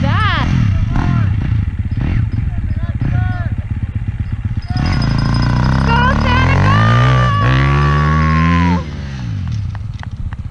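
Dirt bike engine running, then revving up about five seconds in and pulling away, its pitch rising for several seconds before it drops off suddenly. People's voices are heard over it.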